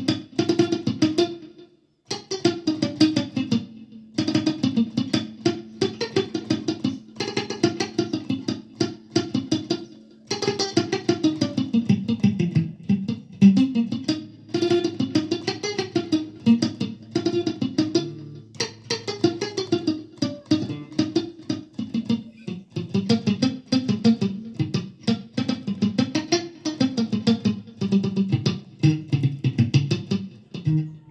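Electric guitar, a Stratocaster-style solid body, picked in a quick steady rhythm of short muted notes, the mute technique with the picking hand resting near the bridge. The playing stops briefly about two seconds in, then runs on with the line moving up and down.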